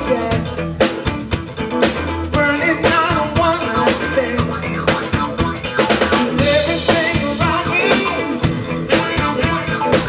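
Live blues-funk band playing: a drum kit beating out a steady groove under an electric bass line, with a lead melody that bends in pitch above.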